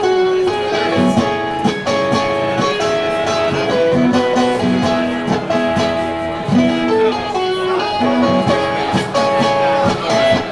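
Solo acoustic guitar played live with no vocals: picked melody notes over lower bass notes and chords.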